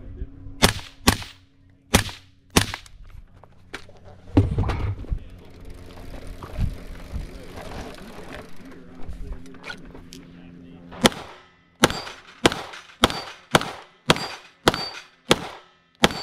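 Four rifle shots from a Tavor SAR bullpup, a thud, then from about eleven seconds in a rapid string of about a dozen pistol shots from a CZ Shadow 2, several followed by the ring of a struck steel target.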